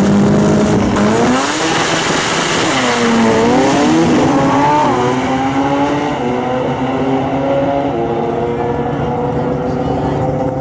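Drag race cars launching: the Mazda RX-8-bodied car's engine, held at a steady high rev, climbs sharply in pitch about a second in, dips back at gear changes around three and five seconds, then fades as the cars run away down the track.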